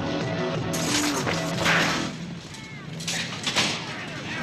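Film soundtrack: music under a loud burst of noise that starts about a second in and peaks near the middle, then a few sharp bangs shortly before the end.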